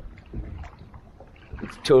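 Faint water sounds of a large boat being poled across a river, with a couple of soft low thuds. A man starts talking near the end.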